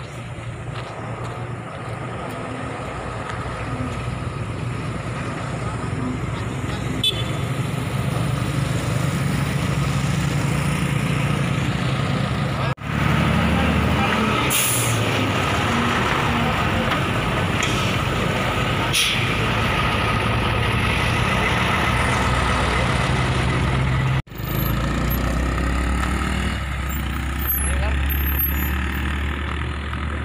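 Road traffic close by: motor vehicle engines running, including the heavy diesel engine of a loaded log truck passing in the middle stretch, with two short hisses. Near the end a steady low engine hum from a car stopped alongside.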